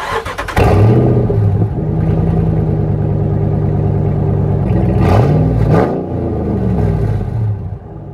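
Dodge Ram 1500's 5.7-litre HEMI V8 cranking briefly, catching loudly and settling into a steady idle, with no muffler or tailpipe: the exhaust ends under the truck. About five seconds in it revs up once and falls back to idle.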